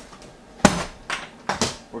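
A sharp knock, then three lighter clicks and knocks over the next second, like small hard objects being handled or set down.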